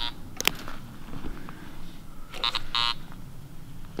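Metal-detecting pinpointer giving short buzzing beeps, one at the start and two close together a little past two seconds in, the signal of metal in the dirt being probed.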